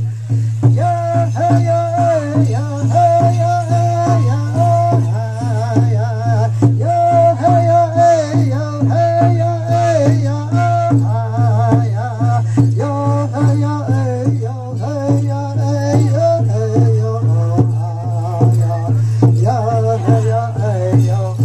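Live dance music: voices singing a wavering melody over a steady low drumbeat, with rattles shaken in time.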